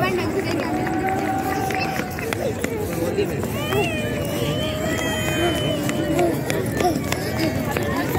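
Voices of children and adults on an open plaza, with chatter and two long drawn-out calls, the second overlaid by high-pitched children's voices, over a steady crowd background.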